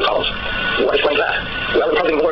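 Speech: a person talking continuously, with no other sound standing out.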